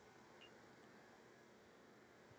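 Near silence: faint room tone with a low hiss.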